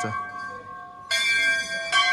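A brass temple bell struck once about a second in, ringing with a cluster of clear, steady tones over the fading ring of the previous strike.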